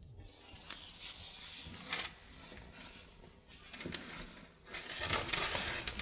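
Soft rustling of starched lace being folded and handled by hand, with a few light clicks, louder in the last second as the lace strip is lifted.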